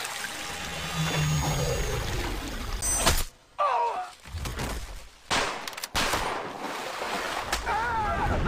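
Film action soundtrack: water pouring and splashing, then several sudden loud cracks like gunshots, each cutting off sharply, with a man's brief vocal cries in between.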